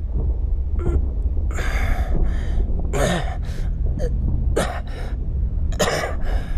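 A man gasping for breath in a series of short, ragged gasps, about half a second to a second apart, over a steady low rumble. The gasps are the laboured breathing of a fighter lying exhausted or hurt.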